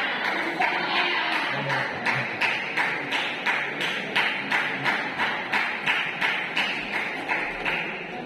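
Table tennis ball being hit back and forth in a steady rally: a sharp tap about twice a second, echoing in a large hall.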